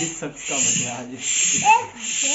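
Hand pump blowing air into a large balloon: a hiss that swells and breaks off with each stroke, a little under once a second. Children's voices and laughter run alongside.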